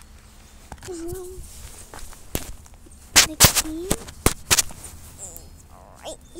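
A short cluster of sharp knocks and taps, about seven in two seconds, the loudest around three seconds in, after a brief hummed voice sound about a second in.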